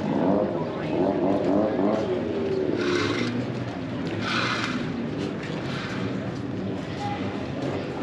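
A motor vehicle engine running, its pitch wavering up and down, with two short hissing rushes about three and four and a half seconds in.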